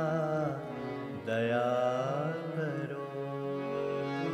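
A man singing a devotional bhajan in long, ornamented held notes that waver and glide, over a steady sustained instrumental accompaniment. One phrase ends about half a second in, and a new one begins with a rising glide a little over a second in.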